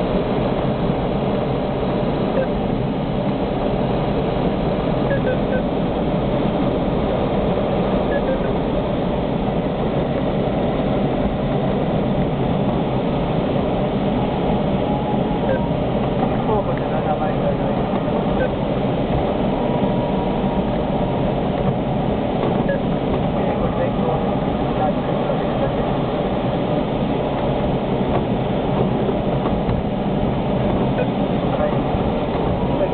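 Steady rush of airflow around the cockpit of a K6 sailplane in gliding flight, with no engine.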